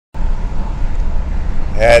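Vehicle engine running, heard inside the cab as a steady low rumble. A man starts speaking near the end.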